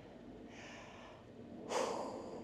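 Quiet background hiss, then near the end one short, sharp intake of breath through the nose, taken close to the microphone just before a woman speaks.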